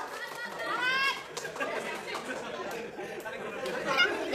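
Indistinct chatter of several people talking over each other, with one voice rising in pitch about a second in.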